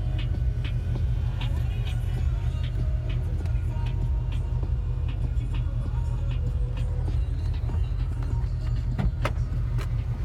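A steady low rumble, taken to be the 1984 Hurst/Olds's 307 V8 idling, with scattered light clicks throughout and a sharper click about nine seconds in.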